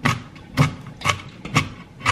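Kitchen knife dicing a red bell pepper on a cutting board: four sharp chops about half a second apart, the second one the loudest.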